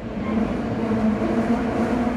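Subway train running, heard from inside the car: a steady rumble with a low hum that fades in and fades out over about three seconds.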